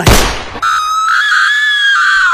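A sudden noisy burst, then a long, high-pitched scream-like cry on one held pitch that slides down at the end.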